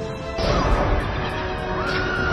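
Film soundtrack: music with a sudden crash about half a second in, then a rising tone near the end that settles into a steady high note.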